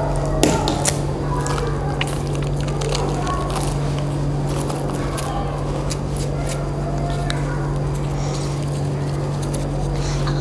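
Fingers digging through sand in a foil tray, with scattered small ticks and crackles, over a steady low hum.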